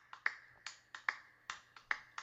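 A fast, uneven run of sharp clicks, about four a second, each with a brief high ring.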